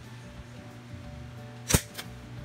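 Handheld single-hole paper punch snapping shut through a sheet of paper: one sharp metallic click near the end.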